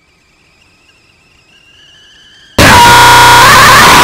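A faint high whine slowly rising in pitch, then, about two and a half seconds in, a sudden, extremely loud, distorted blast of noise with a piercing steady tone in it.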